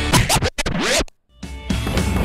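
Theme music broken up by record-scratch sweeps, the pitch sliding up and down, then cut to silence for about a third of a second just past the middle before the music starts again.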